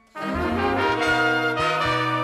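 Jazz orchestra brass section, with trumpets and trombones, comes in loudly and all together about a fifth of a second in over a low bass line, and plays on as full ensemble.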